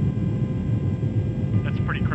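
Steady low in-flight drone of an aerial refuelling tanker during refuelling, with a faint steady hum over it; a voice starts near the end.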